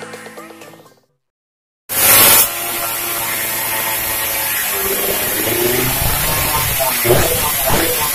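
Intro music fading out, then, after a brief gap, a race-tuned Suzuki Satria single-cylinder two-stroke engine starts up loudly through its exhaust. It runs with a buzzy note, its revs blipped up and down again and again toward the end.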